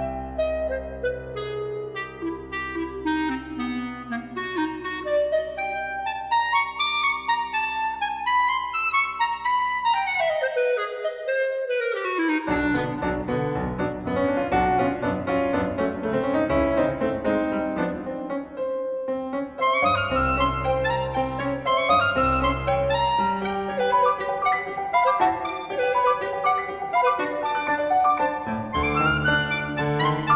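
E-flat clarinet and piano playing a contemporary classical duo piece. The clarinet line climbs over held low piano notes, sweeps down in a quick run about a third of the way in, and then the two play dense, busy passages together.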